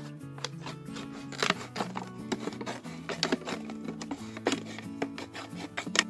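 Background music with soft held notes, over a few sharp snips and crackles of scissors cutting through a thin clear plastic bottle.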